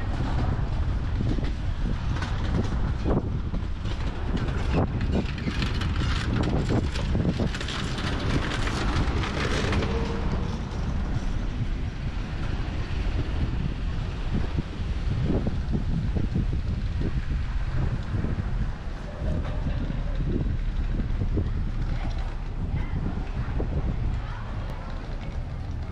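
Outdoor street ambience: wind buffeting the microphone with a steady low rumble, and car traffic passing, loudest about six to ten seconds in. Short scattered knocks sit on top.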